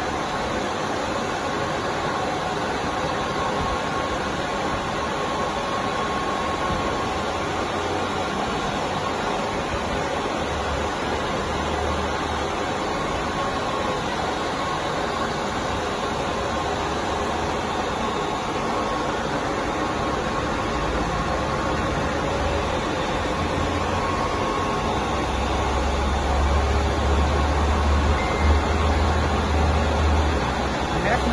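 Vertical wall inkjet printer running: a steady mechanical whir and hiss with a faint thin whine, and a low rumble that grows near the end.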